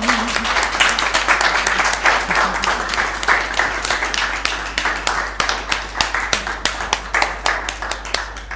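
Applause: many hands clapping at once, starting suddenly and tapering off near the end.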